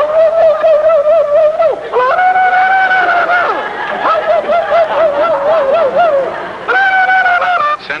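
Men's voices yelling a mock war whoop: long high cries, some held at one pitch and some warbling rapidly up and down.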